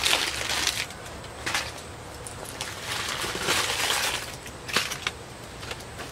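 Aluminium foil crinkling and crackling by hand in uneven spells with scattered sharp clicks, as a doubled-up foil collar is peeled away from a bonsai's roots.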